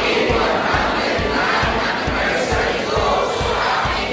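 A large congregation of people shouting together, many voices at once in a loud, sustained group cheer.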